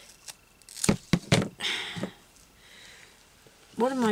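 Scissors snipping through double-sided carpet tape: several short, sharp snips in the first two seconds, then a quieter stretch.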